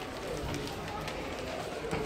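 Faint, indistinct voices over the steady hum of an outdoor urban setting.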